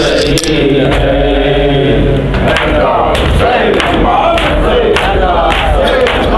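Men chanting a noha, a Shia lament, in unison through a microphone. About halfway in, rhythmic chest-beating (matam) starts, about two slaps a second, under a crowd of voices.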